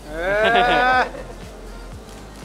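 A person's loud, drawn-out vocal cry lasting about a second, rising in pitch and wavering, over background music with a steady beat.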